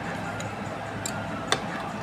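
RMI sewing machine stitching slowly along fabric piping, a light tick roughly twice a second, with one sharper click about a second and a half in.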